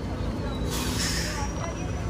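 Steady low drone of idling ferry engines, with a short hiss about a second in.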